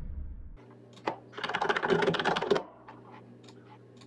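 Typing on a computer keyboard: a quick burst of keystrokes about a second and a half in, then a few separate clicks, over a low steady electrical hum.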